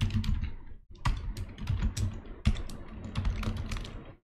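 Typing on a computer keyboard: a quick, uneven run of keystrokes with a brief pause about a second in.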